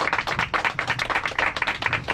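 A small group of people applauding with steady, dense hand-clapping.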